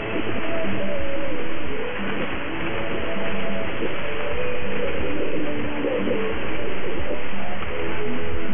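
Music from a shortwave AM broadcast on 5915 kHz, heard through a software-defined radio receiver over a steady hiss of static, with the treble cut off by the receiver's narrow filter.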